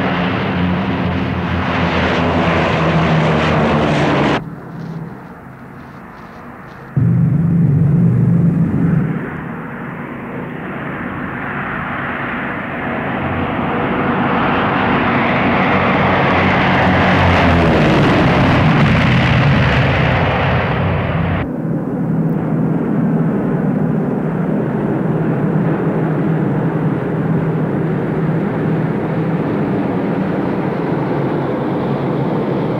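Propeller airplane engine droning in flight, with abrupt cuts between shots. About four seconds in it drops away sharply and comes back loud about three seconds later. A little past halfway it swells louder and falls in pitch as the plane passes close.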